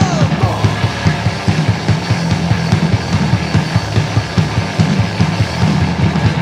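A live band playing loud, fast music: a drum kit beating a quick, steady rhythm under electric guitar and bass.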